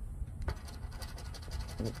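A poker chip scratching the coating off a scratch-off lottery ticket, in quick, rapidly repeated strokes.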